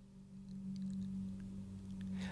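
A faint, steady low hum at one unchanging pitch, with a few soft ticks.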